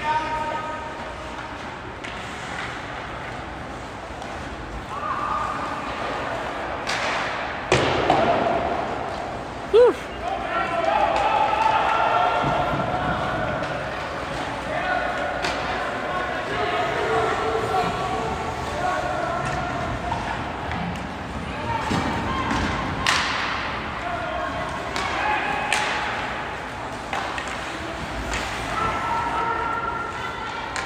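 Ice hockey game sounds in a large, echoing rink: sharp knocks of sticks, puck and boards, loudest twice, a little before 8 s and near 23 s, over distant shouting voices of players and spectators.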